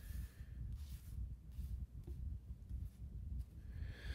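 Quiet low room hum with a few faint, soft swishes of tarot cards being slid and laid out on a table.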